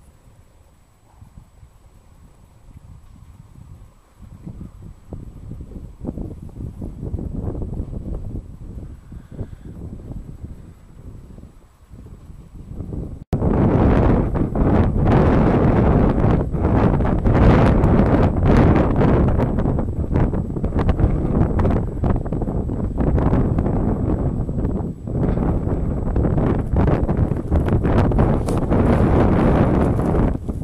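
Wind buffeting the microphone: a rough, gusting rumble strongest at the low end. It jumps much louder just under halfway through.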